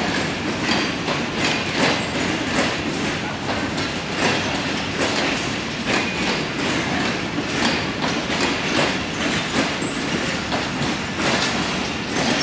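Pakistan Railways passenger coaches rolling past, their wheels clacking over the rail joints in a continuous run of irregular clicks over a steady rumble.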